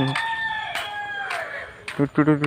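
Rooster crowing once: one long held call of about a second and a half, its pitch dropping as it fades at the end.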